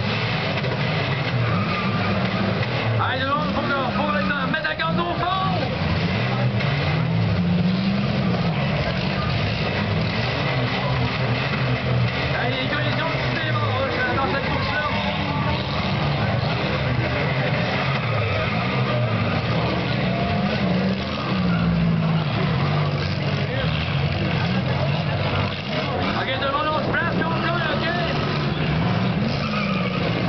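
Several demolition-derby cars with V6 engines revving up and down over and over as they manoeuvre and ram in the arena. A crowd's chatter and shouts run underneath.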